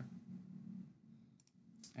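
A computer mouse click, a short, sharp double tick about one and a half seconds in, over a faint steady low hum.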